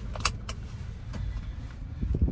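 Car engine idling as a low, steady rumble heard from inside the cabin, with two sharp clicks in quick succession near the start.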